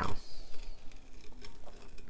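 Tape being peeled off a glittered stainless steel tumbler: an irregular crackle with a few short clicks.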